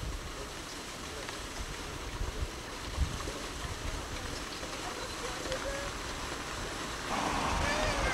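Steady outdoor noise with wind buffeting the microphone and faint distant voices; the noise steps up louder near the end.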